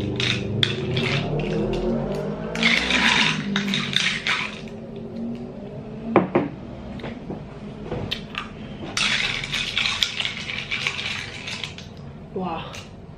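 Metal spoon clinking against a glass cup of marian plums in sugar and ice, with close-up chewing. Two spells of crunching, each lasting about two seconds: one about three seconds in and one near the end.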